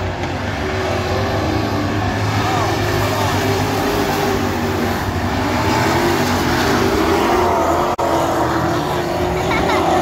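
Dirt-track race cars' engines running at speed around the oval, a steady loud din heard from the grandstand, with spectators' voices mixed in. The sound cuts out for an instant about eight seconds in.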